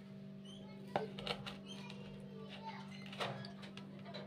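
Faint clicks and scrapes of a metal fork against a plastic bowl as chicken pieces are tossed in breadcrumbs, over a steady low hum; the sharpest click comes about a second in.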